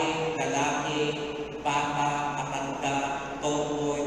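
A man's voice held in long tones of about a second each, stepping from one pitch to the next.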